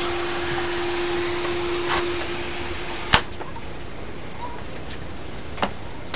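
Small 12-volt pump watering a vertical garden: water running and trickling down through the plant pockets as a steady hiss, with a low steady hum that stops about three seconds in, followed by a single sharp click.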